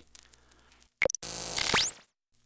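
Hiss and hum of an old archival recording in the gap between two spoken readings. About a second in there is a brief beep, then a loud burst of hiss that ends in a whistle rising steeply in pitch and cutting off.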